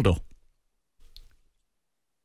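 The end of a spoken sentence, then a pause of near silence broken by one faint, short click about a second in.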